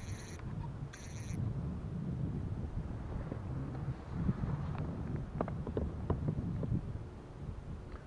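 Wind rumbling on the microphone, with scattered small clicks and knocks from fishing line and tackle being handled. Two short high-pitched chirps sound in the first second and a half.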